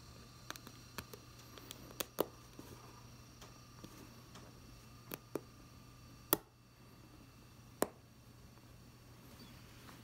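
Faint, scattered small clicks, about eight of them at irregular intervals, as a metal thimble pushes a quilting needle through fabric stretched in a hoop, over a faint steady low hum.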